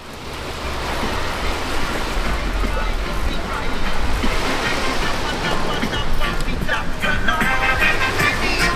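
Seaside beach ambience: surf and lapping waves under steady wind buffeting the microphone, with the voices of beachgoers coming through more clearly in the last couple of seconds.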